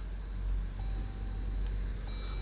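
Steady low hum in the cabin of a 2016 Jeep Grand Cherokee standing in Park, with a faint steady tone joining about a second in.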